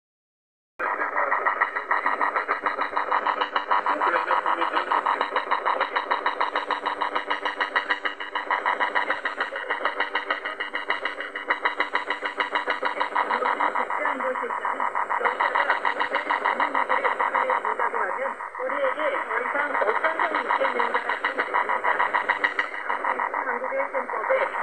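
Shortwave broadcast of Voice of America's Korean service on 9405 kHz through a portable radio's speaker, buried under North Korean jamming: a loud, rapid pulsing buzz with steady tones. A speaking voice comes through faintly beneath it. The sound starts abruptly about a second in.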